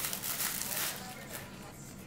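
Plastic bag crinkling as a block of cheese is taken out of it. The rustling fades after about a second.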